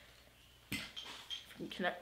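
A camera tripod being picked up and handled: a knock about two-thirds of a second in, then a few light metallic clinks as its legs move.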